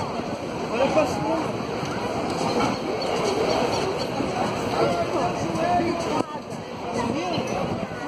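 Several people talking at once nearby, overlapping voices over a steady outdoor background noise, with a brief dip in the noise about six seconds in.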